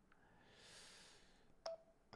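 Mostly near silence: a faint breath, then a single short electronic beep about one and a half seconds in as a timer is set on a phone.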